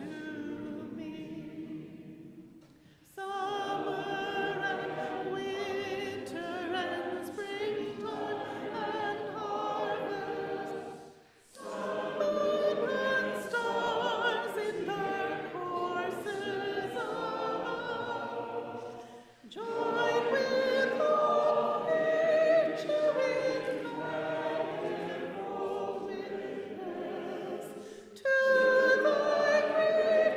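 Congregation singing a hymn together, led by a song leader, in phrases with three short breath pauses between them.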